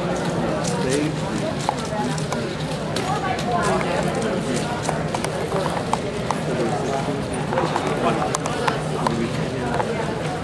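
Plastic 4x4 speed cube being turned fast: a continual run of small, sharp clicks over the chatter of a crowded competition hall.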